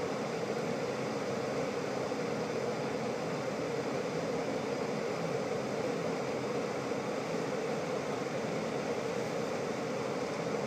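Tesla Model S climate-control blower fan running steadily, an even rush of air heard inside the cabin, before the air-conditioning compressor has kicked in.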